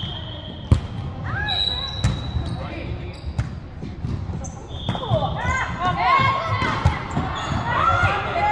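Volleyball rally on an indoor hardwood court: the ball is struck with several sharp smacks, and sneakers squeak repeatedly on the floor, most busily in the second half, amid players' voices. Everything echoes in the large hall.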